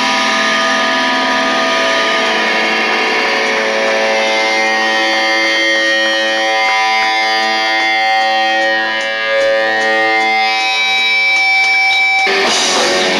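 Electric guitar through effects and distortion, holding ringing, sustained notes with no drums or bass under it. A steady high feedback-like tone joins near the end.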